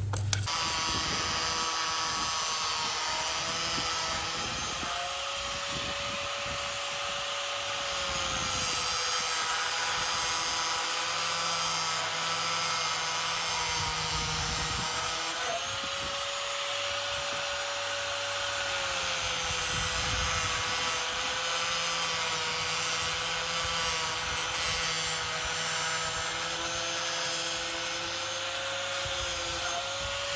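Electric angle grinder running without a break, one steady motor tone whose pitch slowly sags and recovers a few times.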